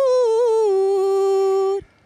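A woman singing unaccompanied: one long, wavering sung note that glides down in pitch, settles into a steady held tone and breaks off just before the end.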